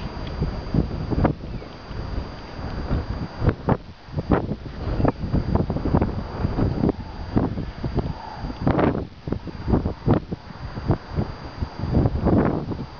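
Wind buffeting the microphone in irregular gusts, rising and falling sharply in loudness.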